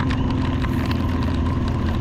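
Motorcycle engine running steadily at a slow riding pace, with a constant hiss of wind and wet road over it.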